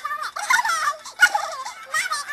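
A girl's high voice in a silly sung warble, its pitch wobbling quickly up and down.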